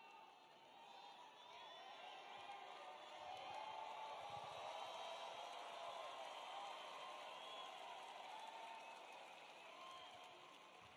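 Large crowd cheering and shouting at low level, many voices at once. It swells a couple of seconds in and eases off near the end.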